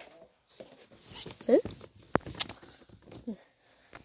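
Two short rising vocal sounds, like a questioning 'huh?', about a second and a half in and again near the end, with a sharp click of handling between them.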